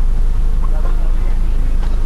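Steady, loud low rumble of a coach bus's engine and road noise as heard inside the passenger cabin, with faint voices in the background.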